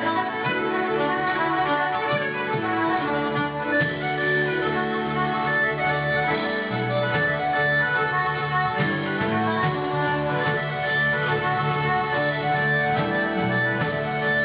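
A live Celtic folk band playing an Irish jig, with accordion and fiddle over acoustic guitar, bass guitar and drums.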